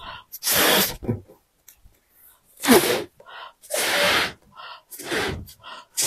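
A latex balloon being blown up by mouth: a series of hard, breathy puffs of air into the balloon, about once a second, with quick breaths taken between them.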